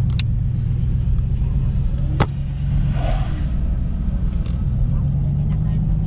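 Chevrolet Caprice running down the road, heard from inside the cabin: a steady low engine and road hum whose pitch rises slightly in the second half as the car speeds up. A single sharp click sounds a little after two seconds.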